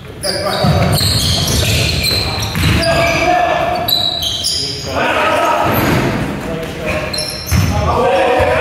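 A basketball bouncing on a wooden sports-hall floor during play, with players' shouts ringing through the large, echoing gym.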